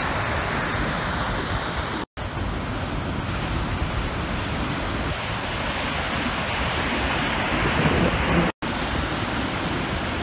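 Heavy ocean surf breaking, a steady rush of water noise without any tones. It cuts out completely for an instant twice.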